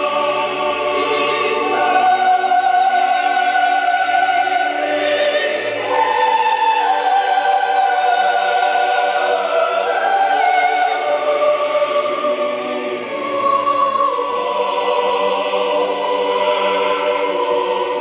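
Large mixed choir singing with a symphony orchestra, slow phrases of long held notes that shift pitch every second or two.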